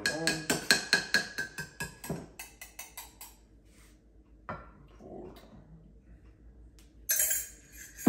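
Eggs and milk being beaten with a utensil in a ceramic mug: rapid clinking strokes against the mug for about two seconds, then slower, scattered taps. A brief hiss near the end.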